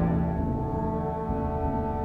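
A chamber wind ensemble holds a sustained chord of several steady pitches, slowly growing a little quieter.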